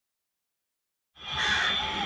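Silence, then about a second in a recording's background noise cuts in abruptly: a steady hiss and low rumble with a thin high whine running through it.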